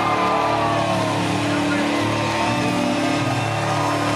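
Live rock concert heard from within the crowd: a held low droning chord from the stage sound system, with crowd voices shouting and whooping over it.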